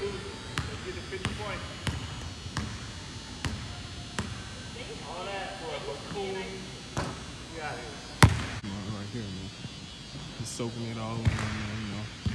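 A basketball dribbled on a hardwood court, bouncing about every two-thirds of a second for the first four seconds, then a few scattered bounces and one sharp, much louder bang a little past two-thirds of the way through.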